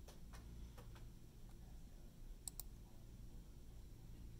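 Faint clicks of a computer mouse working the on-screen simulation: a few soft ones in the first second, then a sharp pair about two and a half seconds in, over near-silent room tone.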